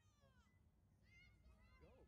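Faint, distant shouts from players across the field. A high call falls in pitch at the start, and a few shorter calls follow about a second in and near the end.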